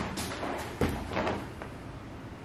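A few dull thumps with rustling, roughly half a second apart and fading by the middle: bodies, hands and clothing shifting on an exercise mat during hands-on massage.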